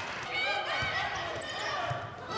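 A basketball dribbled on a hardwood gym floor, with a couple of low thumps about a second apart, under faint background voices in a gym.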